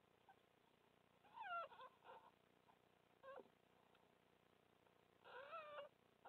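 Newborn red fox cubs mewing and whimpering: a short falling squeal about a second and a half in, a brief squeak a little after three seconds, and a longer wavering call near the end.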